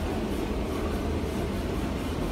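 Steady low rumble and hiss of background room noise, with no distinct events.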